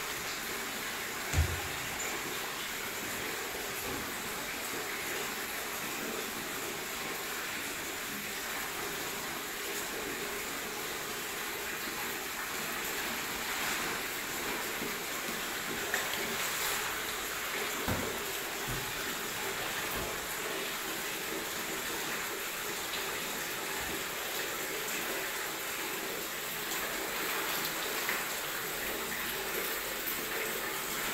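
Steady rushing hiss of a gas-fired soybean steamer. A few dull knocks come through it, the loudest about a second and a half in.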